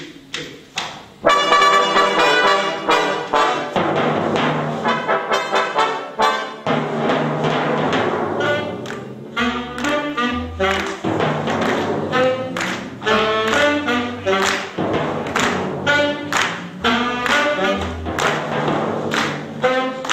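A jazz big band playing live, the brass section of trumpets and saxophones over drums, coming in loud about a second in. Deep timpani strokes come through around the middle and again near the end.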